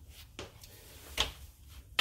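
Two light knocks about a second apart, the second the louder, over quiet room tone: a small shock relocation mount being picked up and handled.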